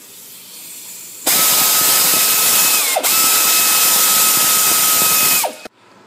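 Air ratchet spinning out one of the 13 mm bolts that hold the A/C accumulator: a steady high whine over loud air hiss, in two runs starting about a second in with a brief break near the middle. The pitch sags as each run ends.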